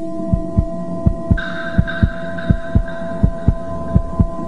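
Heartbeat: paired low lub-dub thumps repeating about every three-quarters of a second, over a steady hum. Higher steady tones join the hum about a second and a half in.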